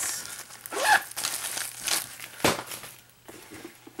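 Crinkling and rustling as a silver makeup-brush pouch and other handbag contents are handled in irregular strokes, with one sharp click about two and a half seconds in.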